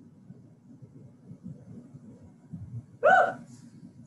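A woman's brief vocal sound during push-ups, one short high-pitched yelp whose pitch rises and falls about three seconds in, over a low background rumble.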